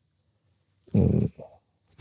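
A man's short, wordless hesitation sound, like a drawn-out "uh", about a second into a silent pause in speech.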